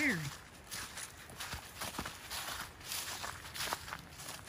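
Footsteps of hikers walking on a rocky trail, an uneven run of short crunching steps about two a second. A voice trails off at the very start.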